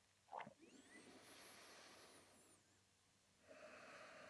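Near silence: room tone, with a faint short sound about half a second in and a soft breath from a person.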